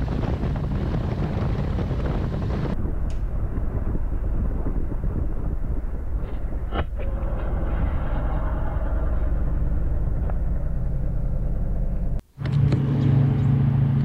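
Riding noise from a 2021 Harley-Davidson Road Glide's Milwaukee-Eight V-twin: a steady engine and wind rumble. About three seconds in the sound suddenly turns muffled as the helmet-mounted camera falls off into the rider's lap. Near the end, after a brief break, the engine is heard idling with a steady low tone.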